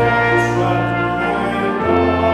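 A congregation sings a hymn over sustained, organ-like accompanying chords, and the chord changes near the end.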